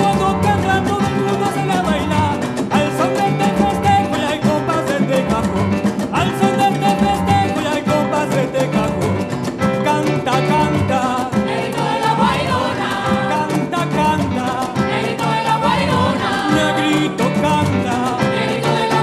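Live Afro-Peruvian festejo: an ensemble of cajones beating a driving rhythm with guitar, under a lead singer's voice.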